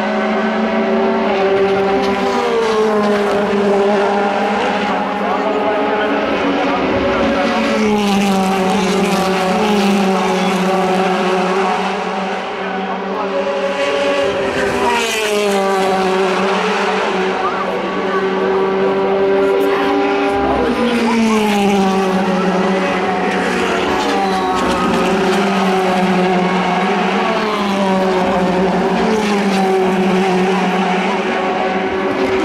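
DTM race cars' 4.0-litre V8 engines passing in turn, their pitch falling in steps as they shift down into the corner, then rising again through the gears as they accelerate away, several times over.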